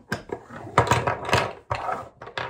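Lengths of half-inch PVC pipe knocking and clattering against each other and a wooden tabletop as they are picked up and moved. It is a run of sharp, uneven knocks, the loudest about a second in.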